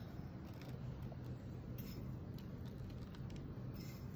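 Quiet room tone: a steady low hum, with a few faint light ticks.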